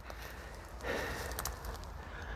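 Low wind rumble on the microphone, with a brief soft hiss about a second in and a couple of faint clicks.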